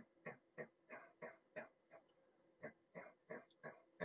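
Whiteboard marker squeaking in short strokes as it dots the points of a grid, about three strokes a second, with a brief pause in the middle.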